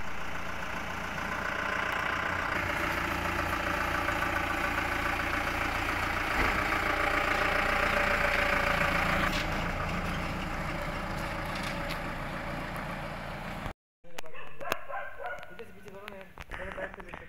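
Armoured jeep's engine running close by, growing loudest about halfway through and then easing off, as of a vehicle moving past. The sound cuts off suddenly near the end.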